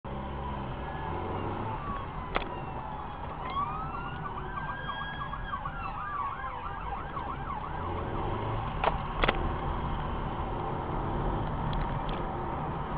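Steady engine and road drone inside a moving car, with a faint emergency-vehicle siren. The siren gives a slow rising-and-falling wail a few seconds in, breaks into a fast yelp, then fades. A few sharp clicks sound in the cabin.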